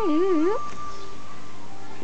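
A person's high-pitched, singsong baby-talk voice cooing to an infant, with a wavering pitch, trailing off about half a second in; after that only a faint steady tone.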